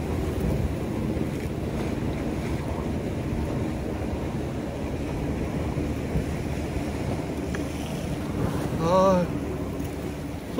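Steady wind on the microphone with sea surf washing against the shore rocks. About nine seconds in comes a short, wavering, voice-like sound.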